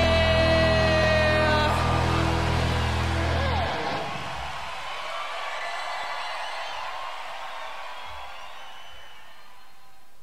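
A live rock band's final sustained chord and held note ring out and stop within about the first four seconds, followed by a concert crowd cheering and whooping that gradually fades away.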